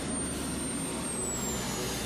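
A truck's engine running as it drives up toward the camera, a steady rumble, with a thin high whine that dips slightly in pitch about a second in.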